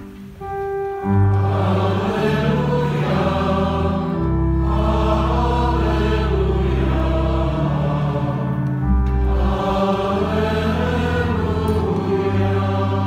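Church choir singing the Gospel acclamation over long, steady low notes, coming in loudly about a second in after a brief lull.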